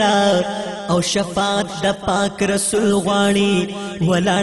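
Pashto naat singing: a wordless sung melody that rises and falls over a steady low drone.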